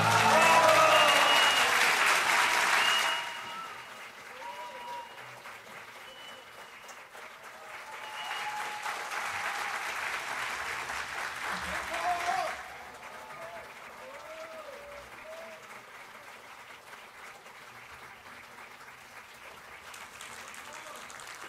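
Concert-hall audience applauding: loud clapping for about three seconds that then drops away, a second swell from about eight to twelve seconds in, then quieter scattered clapping and voices.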